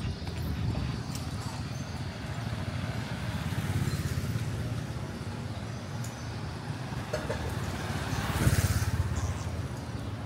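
Street traffic ambience: a steady low rumble of road traffic, with a vehicle passing close about eight and a half seconds in, the loudest moment.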